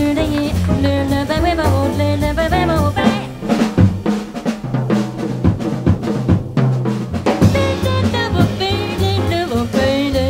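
Live small-group jazz: a drum kit with snare, bass drum and cymbals, a walking upright bass, and a saxophone line over them. Around the middle the bass line breaks off for a few seconds while the drums keep going, then the full band comes back in.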